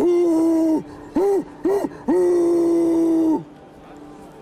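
A person imitating a bear's roar with the voice: a long call, two short ones, then a longer held call, loud enough to be called too loud.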